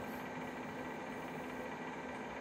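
Original Compaq Portable computer running idle just after power-on: a steady hum of its cooling fan and power supply, with faint constant tones.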